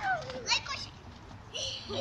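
Small children's high-pitched voices calling and chattering while they play, in short bursts during the first second and again near the end.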